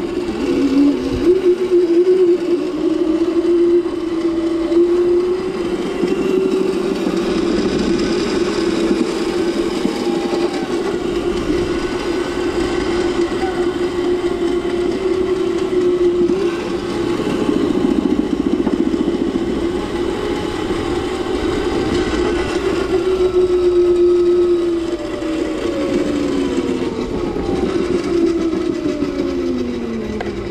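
The electric motor of a Razor Crazy Cart ride-on kart whining steadily as it drives along, its pitch falling near the end as the kart slows.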